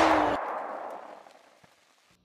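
The end of an intro sound: a sustained sound cuts off less than half a second in and leaves an echoing tail that fades out by about a second and a half.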